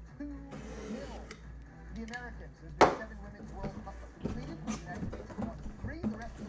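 Cardboard shipping box being opened by hand: a box cutter scraping through the packing tape and the flaps being pulled open, with one sharp knock about halfway through.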